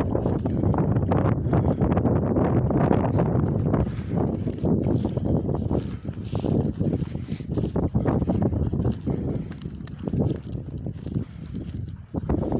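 Wind buffeting the microphone in a heavy, uneven low rumble, with rustling of long dry grass as someone walks through it; it eases a little in the last couple of seconds.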